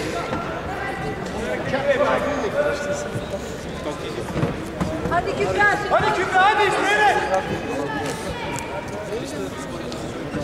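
People's voices in a large, echoing sports hall: spectators talking and calling out, with two louder bursts of raised voices about two seconds in and again around six to seven seconds in.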